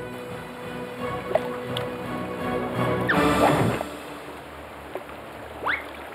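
Cartoon background music, with sound effects as the bear drops into the dinghy: about three seconds in, a falling glide over a short burst of rushing noise, then a short rising glide near the end.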